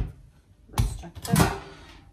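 Kitchen handling noises as a plastic mixing bowl is moved across the counter: a sharp knock at the start, then two duller bumps with some rustling about a second in.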